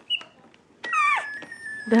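Baby walker's electronic toy play panel sounding as its buttons are pressed: a short high beep, then about a second in a short call that falls in pitch, over a long steady electronic tone.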